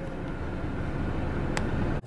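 Steady road and engine noise inside a car's cabin while driving on a highway, with one brief click about one and a half seconds in.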